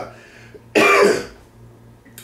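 A man clearing his throat with one short, loud cough about three-quarters of a second in.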